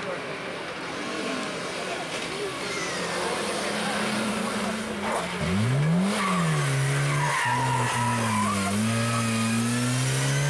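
Lada saloon rally car's four-cylinder engine coming up under power, revving sharply up and back down a little past halfway as it takes a tight turn. It then pulls away at a steady pitch, with a short tyre squeal about two-thirds of the way in.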